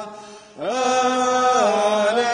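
A single voice chanting the Gospel acclamation in slow, long-held notes that slide between pitches. One phrase fades into a short breath about half a second in, then the next phrase swoops up and holds.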